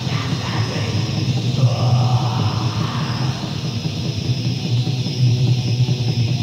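Raw black metal demo recording in lo-fi tape quality: distorted guitars and fast drumming merged into one dense, unbroken wall of sound.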